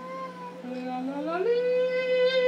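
A man and a small girl singing long held notes together, one voice an octave above the other. About halfway through, the lower voice slides up to join the higher one, and they hold the same note.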